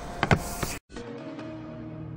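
A hand moving a phone on a table, with a couple of faint clicks. After a brief cut to silence, background music with sustained low held tones comes in.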